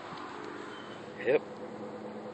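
A flying insect buzzing near the microphone, a steady low hum that shifts pitch once partway through.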